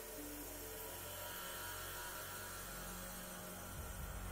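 The last notes of background music end within the first second, leaving a steady low electrical mains hum with faint hiss on the soundtrack.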